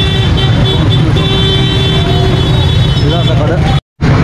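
Busy city street traffic with a steady low rumble and a vehicle horn tooting on and off through most of it. The sound drops out completely for a moment just before the end.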